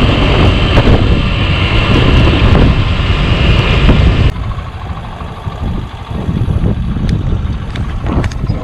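Motorcycle riding at speed, its engine and road noise mixed with loud wind rushing and buffeting on the camera microphone. The noise drops to a lower level about four seconds in.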